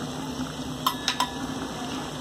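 Mutton, onion and spices cooking in oil in a clay handi: a steady low sizzle over a steady low hum, with a couple of light clicks about a second in.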